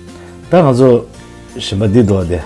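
A voice over steady background music, heard in two short phrases with wavering pitch, about half a second in and again near the end.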